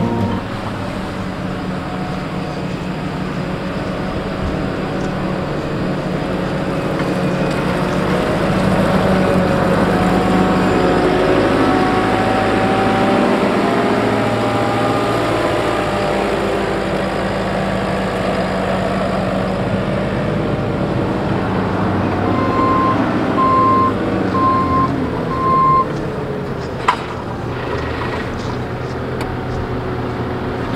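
JCB Agri Pro telehandler's diesel engine running as the machine drives across the field, its pitch rising and falling with the throttle. About two-thirds of the way in, a high warning beeper sounds about four times.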